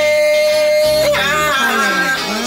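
Reggae song: a singer holds one long high note for about a second, then the voice bends down into a wavering melodic line over the backing track.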